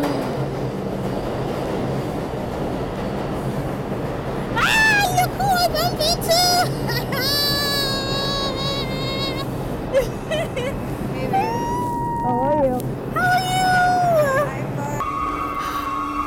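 New York City subway train pulling into the station and standing at the platform, a steady rumble with a low hum. From about four seconds in, a singing voice with music comes in over the train noise, and near the end the train noise cuts off suddenly.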